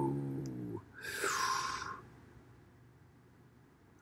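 A man's drawn-out vocal 'whoa', its pitch falling, followed about a second later by a breathy whooshing sound from the mouth.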